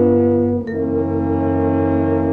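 Mid-1950s orchestral recording playing held brass chords, with a sharp change of chord about two-thirds of a second in.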